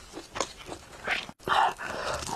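Close-miked eating mouth sounds: a few short wet smacks and clicks of chewing, a very brief dropout to silence just past the middle, then a louder short mouth noise.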